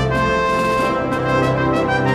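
Instrumental background music with held notes that change every half second or so.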